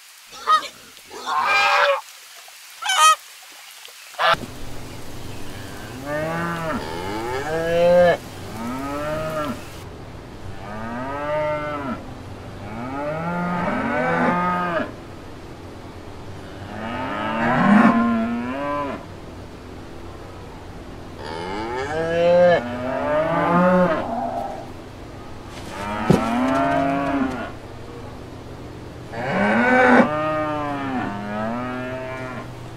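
Cattle mooing over and over, each call rising and falling in pitch, one every second or two. In the first few seconds, before the cattle, a pig gives a few short squeals.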